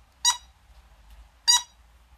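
Two short, high-pitched toots from the noisemaker inside a rubber dog-toy giggle ball as it is tipped over in the hand, about a second apart.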